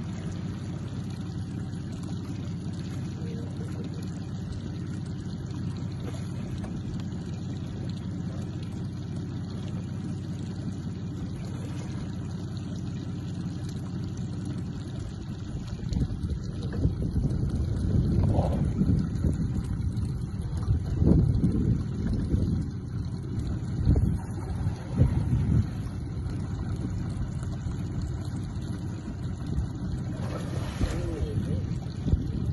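Low, steady rumble of an idling boat motor. From about halfway through, wind buffets the microphone in irregular louder gusts for several seconds before it settles again.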